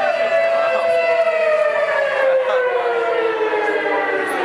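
A loud, long siren-like tone with many overtones, sliding slowly down in pitch across the whole stretch, with faint crowd chatter under it.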